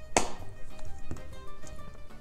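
Background music, with one short slurp near the start as thick Frosty is sucked off the end of a plastic straw.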